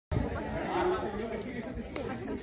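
Several voices talking over one another: overlapping crowd chatter, with no one voice standing out.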